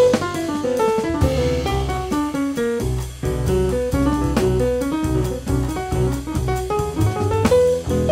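A jazz quartet of saxophone, piano, double bass and drum kit playing live: a busy line of quick notes over double bass and drums.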